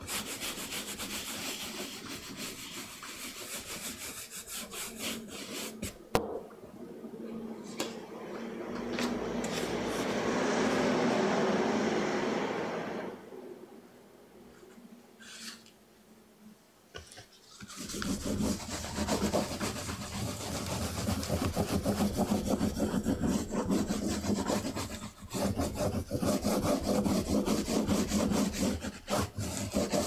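Pigment being scrubbed with a brush over an inked, carved woodblock, swelling louder before it stops; after a quieter pause with a few light clicks as paper is laid on the block, a baren is rubbed hard and fast back and forth across the back of the paper, taking the impression from the key block.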